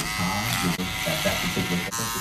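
Electric hair clippers buzzing steadily as the blade trims the hairline at the temple.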